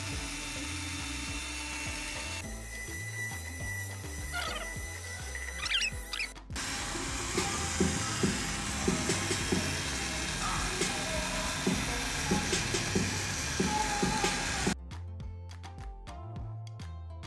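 Cordless drill spinning a paddle mixer through epoxy paint in a plastic bucket, run below full speed to avoid splattering, with abrupt cuts between takes. Background music plays along, and near the end only the music is left.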